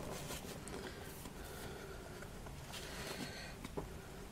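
Faint rustling and light scraping as pheasant feathers are drawn out of a moss-covered wreath form and pieces are lifted off it, with a couple of soft taps near the end.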